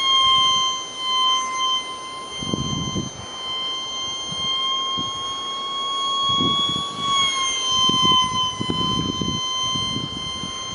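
Ultra-micro RC jet's electric ducted fan whining in flight: a steady high whine with overtones that creeps up in pitch and then drops a little about seven seconds in. Irregular low rumbles, louder than the whine, come and go underneath.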